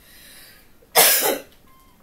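A woman coughs once, loudly, about a second in.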